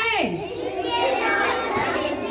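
Children's voices chattering and calling out over one another, with one high voice sliding steeply down in pitch right at the start.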